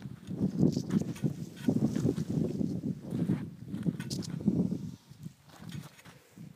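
Footsteps crunching on a dirt road in an irregular run for about five seconds, with a short laugh about a second in.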